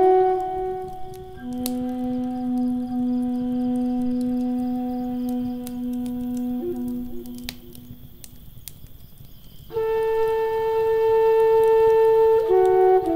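Native American flute playing a slow melody of long held notes, one low note sustained for several seconds, over the crackling of a wood fire. The flute nearly drops out around eight seconds in, then comes back with a loud held note about ten seconds in.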